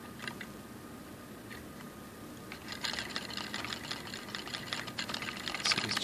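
Wire coil of a small battery-and-magnet motor spinning in its wire supports, its ends clicking in the cradle as a fast, steady rattle that starts a little before halfway through. Before that there are only a few faint clicks as the coil is set going.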